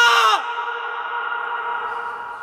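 Song breakdown: the band drops out and the last held vocal note slides down in pitch and cuts off about half a second in. A quieter sustained musical tone is left ringing on and slowly fading.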